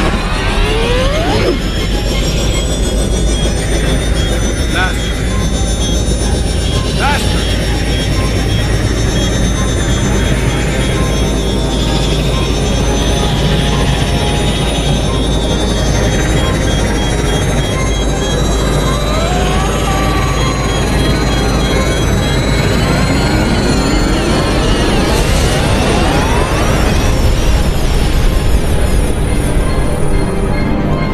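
Film sound design of super-speed vibration: a steady loud rushing roar under orchestral score. A regular electronic beeping runs through most of it and stops about two-thirds of the way through, and rising sweeps build near the end.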